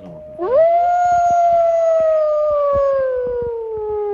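One long howl, rising sharply in pitch at the start and then sliding slowly down over about five seconds.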